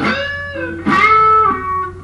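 Electric guitar playing two notes of a country lick. The second, louder note comes about a second in, is bent up in pitch and held: a string bend from the 12th fret on the B string.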